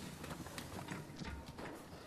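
A room full of people getting up from their chairs at once: shuffling, chairs moving and scattered light knocks.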